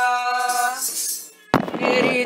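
Devotional bhajan music: a held note fades out about a second in, followed by a brief near-silent gap and then a sudden burst of percussion as the song starts up again.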